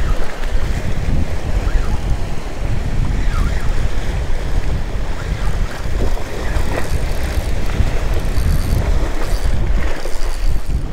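Wind buffeting the microphone in a loud, steady rumble, over waves washing against jetty rocks.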